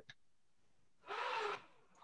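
Faint room tone with one short hissing noise about a second in, lasting about half a second.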